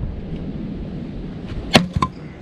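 An axe splitting a firewood log: one sharp, loud crack near the end as the blade goes through, followed at once by a smaller knock.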